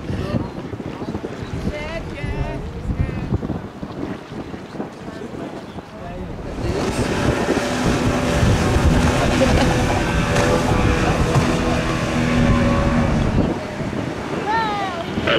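Wind on the microphone over river ambience, then about halfway in many ships' horns start sounding together, a steady chord of low tones held to the end.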